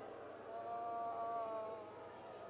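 Congregation praying aloud in a large, reverberant hall, with one voice held in a long, slightly falling wailing cry from about half a second in until near the end.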